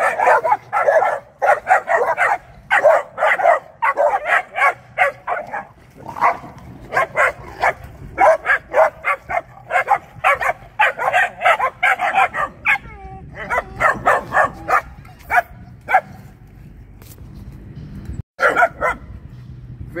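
Puppies barking repeatedly in quick runs of short, sharp barks, with a brief pause about six seconds in and a longer one near the end.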